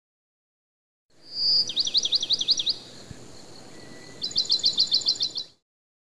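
Bird song: a short whistle, then a run of about eight quick down-slurred notes, a pause, and a faster trill of about ten notes near the end. It starts about a second in and cuts off abruptly.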